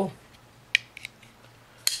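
Strider SMF folding knife's blade being worked open and shut, giving sharp metallic clicks: a loud click a little under a second in, a couple of faint ticks just after, and another loud click near the end.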